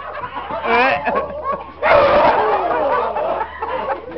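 Men yelling in high, wavering whoops, in two loud outbursts about a second in and about two seconds in, the second the longest.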